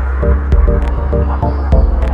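Minimal dub techno track: a deep sustained bassline under repeated short chord stabs, with light hi-hat ticks on top.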